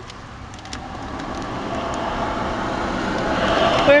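A passing road vehicle heard from inside a stopped car: a steady rush of tyre and engine noise that grows louder throughout as it approaches.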